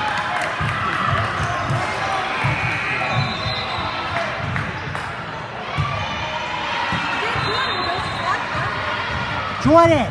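Basketball game on a hardwood gym court: a ball bouncing in irregular low thuds, with a steady background of players' and spectators' voices.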